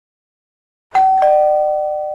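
Two-note ding-dong doorbell chime: a higher note about a second in, then a lower note a quarter second later, both ringing on and slowly fading.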